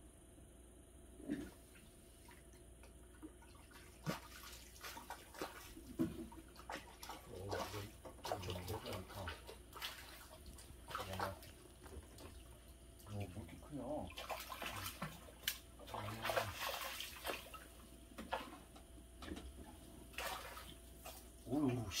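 A hooked crucian carp splashing and thrashing at the water surface as it is played toward the bank. The irregular splashes start a few seconds in and come thick and fast in the second half.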